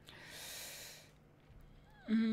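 A single breath through the nose, close to the microphone, lasting about a second.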